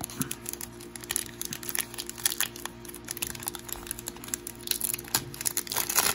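Foil wrapper of a trading card pack crinkling and crackling in quick, irregular bursts as it is handled and opened by hand, over quiet background music.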